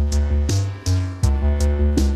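Instrumental reggae version side of a 1986 Jamaican 7-inch single: a heavy bass line and a drum-machine beat with evenly spaced sharp hi-hat strikes, about three a second, and no vocal.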